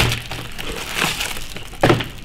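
Cardboard food box and plastic wrapper crinkling as a frozen snack is taken out. A sharp clack near the end comes from the microwave door being opened.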